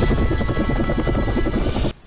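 Helicopter rotor sound effect, a fast steady chop, mixed with jingle music; it cuts off suddenly near the end.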